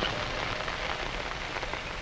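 A fish frying in a skillet, sizzling steadily with a dense, fine crackle.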